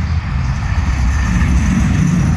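Heavy road traffic close by: a large vehicle's engine running, a steady low rumble with a hum that grows in the second half.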